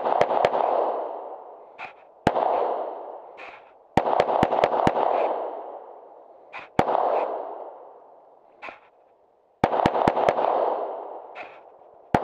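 Glock pistol fired in quick strings: three rapid shots, a single shot, five rapid shots, another single, then four rapid shots. Each shot is followed by a long fading echo.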